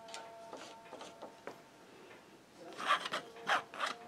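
Three short strokes of an artist's painting tool scraping against a surface, close together near the end, with faint light ticks before them.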